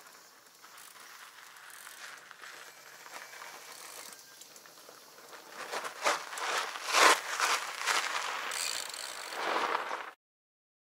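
Fat bike's wide knobby tyres rolling over gravel and dirt as the rider comes down the track and passes close by, a rough noise that swells from about halfway through and is loudest a second or so later, over faint outdoor background.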